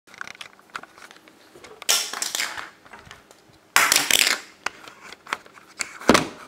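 Handling noise from a camera being moved: scattered clicks and knocks, and two loud rustling scrapes, one about two seconds in and one just under four seconds in.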